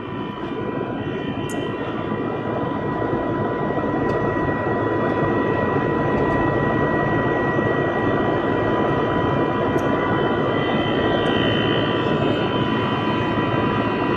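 Heat pump running in air-conditioning mode: a steady mechanical roar with a faint constant high tone, growing louder over the first few seconds and then holding steady.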